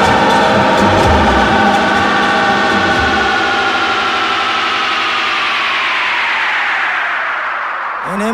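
DJ mix of electronic music. The low beat drops out about three seconds in, then the whole mix glides steadily down in pitch over the last few seconds: a DJ transition into the set's closing track.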